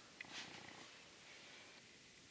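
Near silence: room tone with a faint low hum, a small click about a quarter second in and a brief soft hiss just after it.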